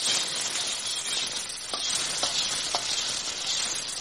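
Vegetables stir-frying in hot oil in a steel kadai: a steady sizzle, with three short clicks around the middle.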